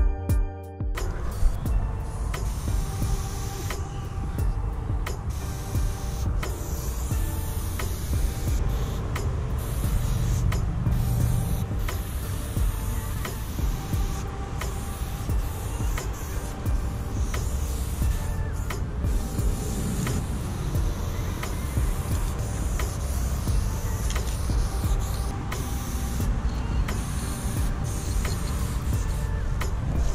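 Aerosol spray paint can hissing in repeated bursts, stopping briefly between strokes, over a steady low rumble.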